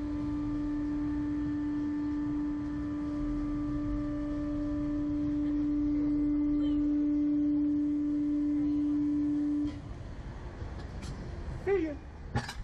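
Steady pitched hum from the slingshot ride's machinery as the riders wait for launch, cutting off suddenly about three-quarters of the way through, leaving a low rumble. A short rising cry from a rider comes near the end.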